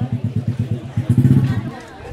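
A motorcycle engine running close by with a steady low putter of about ten beats a second. It gets louder a little after a second in and cuts off suddenly near the end.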